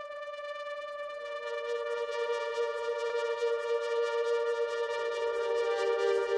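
Held synthesizer chord swelling in as an electronic instrumental opens. A second sustained note joins about a second in, and the sound grows steadily louder.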